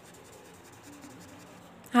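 A pen scribbling back and forth on paper, shading in a drawing; faint and scratchy.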